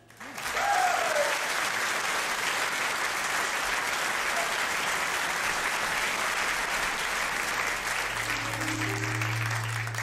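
Concert audience applauding at the end of a jazz number, rising in quickly and holding steady, with a single short falling call from the crowd about a second in. Near the end, low sustained instrument notes begin under the applause as the next piece starts.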